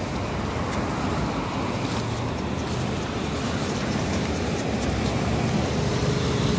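Steady road traffic noise from cars passing on the street.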